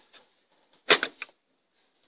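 A Playmobil plastic wall panel being pushed open by hand: a short scraping clack about a second in, then a smaller click.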